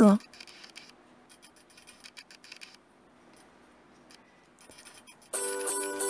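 Faint, light taps and clicks of a hand-held ink pad being dabbed onto a dragonfly stamp to ink it. Background music comes in about five seconds in.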